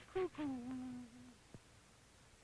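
A wordless voice humming. It gives a short note, then a longer held note that slips slightly lower and stops a little over a second in. A faint click follows.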